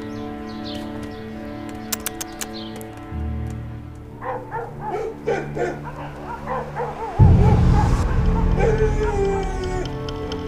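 Several dogs barking and yipping over sustained orchestral-style background music; a deep low layer of the music swells in suddenly about seven seconds in.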